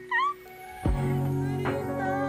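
A brief, high, squealing laugh, then background music comes in just under a second later and runs on with a steady low bass line.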